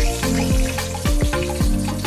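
Background music with a steady beat: held notes over deep bass drum hits that drop in pitch.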